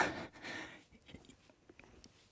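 A faint breathy exhale from a woman exercising, followed by a few faint ticks.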